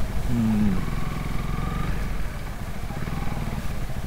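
Honda CRF250L single-cylinder engine running at low speed as the bike slows down, a steady low pulsing exhaust note.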